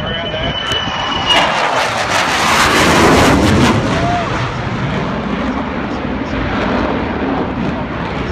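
F/A-18 Hornet jet fighter flying low overhead: its jet noise swells about a second in, peaks around three seconds in, then fades to a fading rumble as it moves away.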